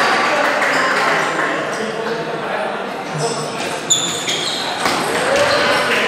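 Table tennis ball clicking off rubber paddles and the table in a rally, a few sharp ticks in the second half with the loudest about four seconds in, over steady crowd chatter.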